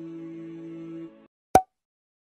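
Background music of long held tones that cuts off abruptly just after a second in, followed after a brief silence by a single sharp, louder pop: an end-screen button-animation sound effect.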